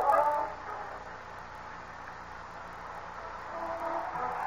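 Orchestral bridge music with brass, played between scenes of a radio drama, fading out about a second in. A faint hiss of the old recording carries the middle, and the music comes back in near the end.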